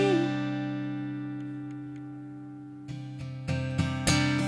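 Acoustic guitar: a strummed chord rings and slowly fades, then strumming starts again about three seconds in, a few strokes in quick succession.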